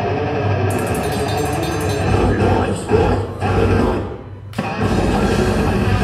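Technical death metal band playing live through the PA: distorted electric guitars and drums. About four seconds in the band stops for a moment, then comes straight back in with the full band.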